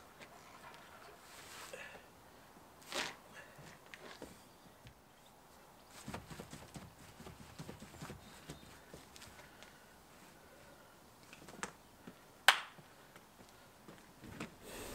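Faint scattered knocks and scuffs of a heavy battle rope being laid out and moved on a lawn and path, with footsteps, heard from a distance. One sharp click near the end is the loudest sound.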